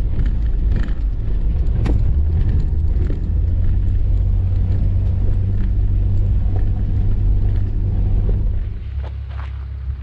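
Jeep Wrangler driving along a dirt track: a steady low engine drone and tyre rumble, with scattered small knocks from the gravel surface, heard from a camera on the hood. The sound drops off quieter near the end.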